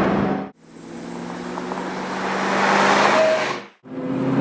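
2003 Ford Mustang Cobra's supercharged 4.6-litre V8 running at a steady pitch, with road and wind noise growing steadily louder over about three seconds. Brief dropouts to silence fall just after the start and near the end.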